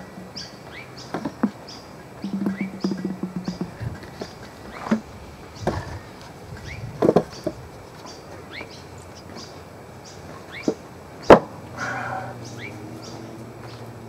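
Woodworking handling sounds: a plastic glue bottle being squeezed and wooden boards being handled and set in place on a box, with scattered light knocks and one sharp knock late on.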